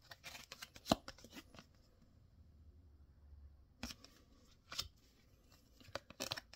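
Topps Widevision trading cards being handled and shuffled through a stack: light rustles and snaps of card stock, the sharpest click just under a second in and two more near four and five seconds.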